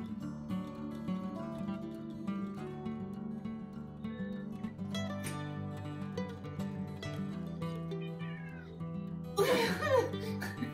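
Background acoustic guitar music, with a couple of short, high, sliding calls over it, about halfway through and again near the end, and a burst of voice just before the end.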